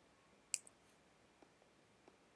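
A single sharp computer mouse click about half a second in, otherwise near silence.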